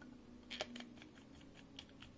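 Faint, scattered light clicks and ticks from hands twisting the threaded cap off an Epitome Pens Liberty fountain pen, with a small cluster about half a second in.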